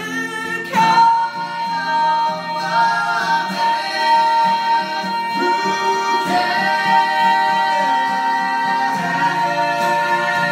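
A woman singing with two young men joining in, over a strummed acoustic guitar. A long held note starts about a second in and is sustained while the other voices move around it.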